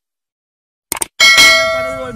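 Subscribe-button animation sound effect: two quick clicks about a second in, then a loud, bright notification bell ding that rings and fades away.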